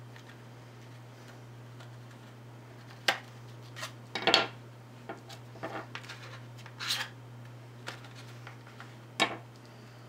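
Strong scissors cutting through a few layers of paper to trim an edge straight: a handful of separate crisp snips and sharp clicks, starting about three seconds in. A steady low hum runs underneath.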